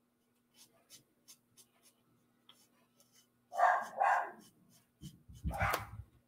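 A dog barks twice in quick succession about three and a half seconds in, then a louder burst with a deep thump near the end. Faint strokes of a marker on card tick underneath.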